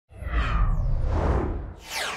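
Whoosh sound effects from an animated logo intro. A deep bass swell runs under a rushing whoosh, and a falling swoosh comes near the end.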